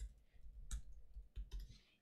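A handful of faint, irregularly spaced computer keyboard keystroke clicks as a short word is typed.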